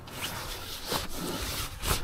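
A stiff base board being slid down into a fabric pocket of a dog back-seat extender: a low rustling scrape of board against fabric, with a couple of light taps.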